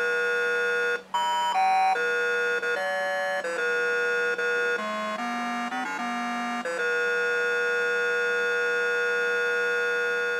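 A simple electronic beeping tune played by a BBC micro:bit through a small speaker: single notes step up and down, with a brief break about a second in, and the tune ends on one long held note from about seven seconds in.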